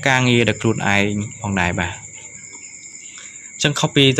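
A voice narrating, with a pause of about a second and a half in the middle; a steady high-pitched whine runs underneath.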